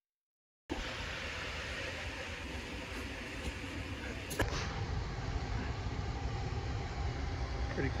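After a brief dead silence, a steady outdoor rush of flowing river water and wind on the microphone, heavy in low rumble, with a single sharp click about halfway through.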